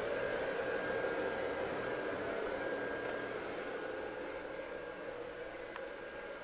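Steady mechanical hum with a thin high whine above it, easing slightly toward the end.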